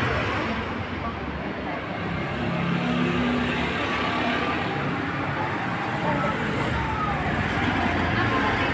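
Steady road traffic noise, a low rumble of passing vehicles, with indistinct voices over it.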